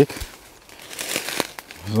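Footsteps through dry leaf litter and undergrowth, the dead leaves crackling and rustling underfoot, a little louder about a second in.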